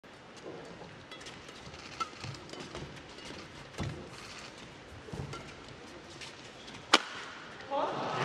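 Badminton rackets striking a shuttlecock during a doubles rally: a few sharp cracks a second or more apart, the loudest near the end, over a faint murmur of arena voices.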